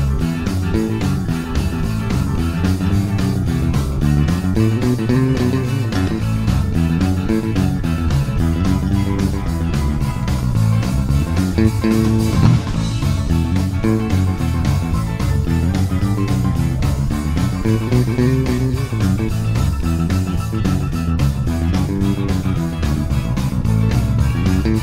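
Squier Bass VI six-string bass guitar playing an instrumental piece, its low notes moving under other guitar parts over a steady beat.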